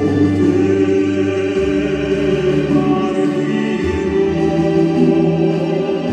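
A male opera singer singing live through a microphone, holding long notes over an instrumental accompaniment whose bass changes pitch every couple of seconds.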